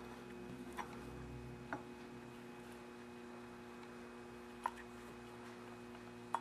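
Quiet room tone with a faint steady hum, broken by three light clicks.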